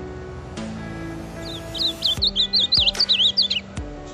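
Ultramarine grosbeak (azulão) singing one quick phrase of rapid up-and-down whistles, starting about one and a half seconds in and lasting about two seconds, over background music.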